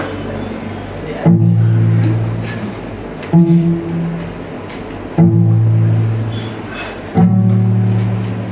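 Cello played with a bow: four slow, low notes, a new one about every two seconds, each starting sharply and fading away.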